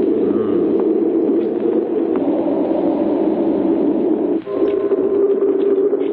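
A steady, low electronic hum of a spaceship interior from an old science-fiction film soundtrack. About four seconds in it dips briefly and gives way to a steadier, purer hum.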